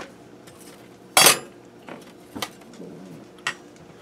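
Metal spatula clanking against kitchen dishes. There is one loud clank about a second in and a few lighter clinks after it.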